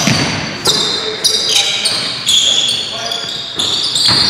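Basketball game on a hardwood gym floor: sneakers squeaking in repeated short, high-pitched chirps as players cut and stop, with a basketball bouncing and players' voices.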